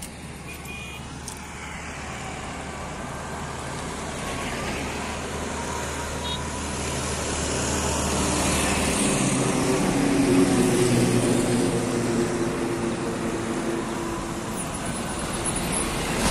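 Road traffic passing: a motor vehicle's engine grows louder, is loudest about ten seconds in, then fades a little.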